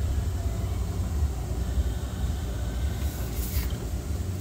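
Steady low engine rumble of a vehicle idling, with a short high scraping hiss about three seconds in.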